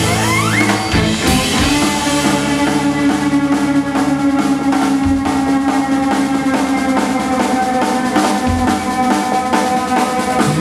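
Live country-rock band playing fast with no singing: fiddle over drum kit, bass and guitar, with a rising fiddle slide near the start.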